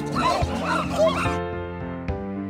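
Chimpanzees calling: a quick run of short rising-and-falling cries, about three a second, that stop abruptly about a second and a half in, over background music.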